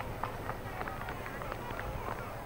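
Steady outdoor ambience of a large waiting crowd: a low murmur of many distant voices, with many small, short sounds scattered through it.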